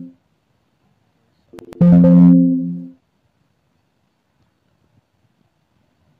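A short plucked-string musical note or chord, struck sharply about one and a half seconds in and fading out over about a second. The tail of an identical note dies away at the very start.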